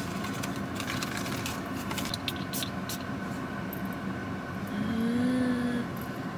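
Handling of a small perfume box and bottle: scattered light clicks and rustles of packaging being opened, over the steady low hum of a car cabin. Near the end comes a brief hummed voice, about a second long.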